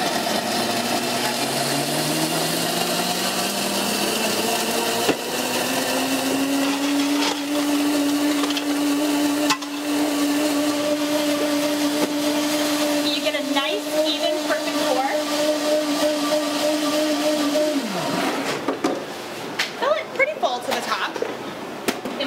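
Commercial countertop blender in a sound enclosure running a preset program, crushing ice and fruit for a smoothie. The motor winds up in pitch over the first several seconds, holds steady, then winds down and stops about eighteen seconds in.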